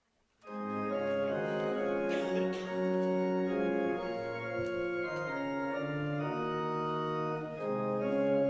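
Organ coming in about half a second in and playing the closing hymn in held chords that change every second or so.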